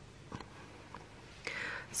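Quiet room tone with a faint tick about a third of a second in, then a soft intake of breath near the end, just before speaking.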